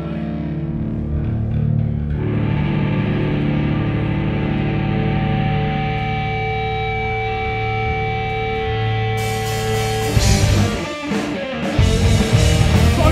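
Live pop-punk band: distorted electric guitars and bass ring out held chords, with a few steady high tones over them. About nine seconds in, cymbals come in and the full band with drums hits hard, drops out briefly, and starts again near the end.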